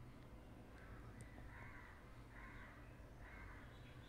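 Near silence: a low steady hum, with four faint, evenly spaced animal calls in the background, a little under a second apart.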